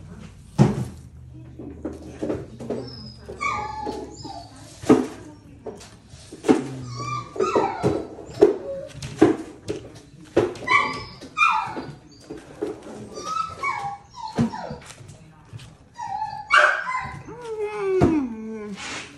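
A dog whining in short, high whimpers that bend up and down, again and again, among sharp clicks.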